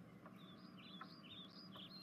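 Near silence, with faint, repeated high chirps of a small bird starting about a quarter second in.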